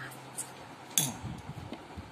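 Light clinks of kitchen utensils while salt goes into a bowl of pani puri water: a small click near the start and a sharper clink about a second in.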